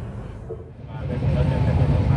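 Railway station ambience: people's voices, then from about a second in a louder, steady low rumble of a train under the chatter.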